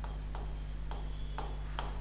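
A stylus writing on the glass of an interactive whiteboard, making a few short, light strokes. A steady low electrical hum runs underneath.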